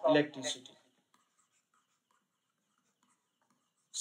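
A man's voice speaking briefly, then very faint scratches and taps of a stylus writing on a tablet.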